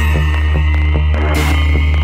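Psytrance played by a DJ over a sound system: a steady heavy bassline under a slowly rising high synth tone, with a bright noise hit about every second and a half, one of them just past halfway.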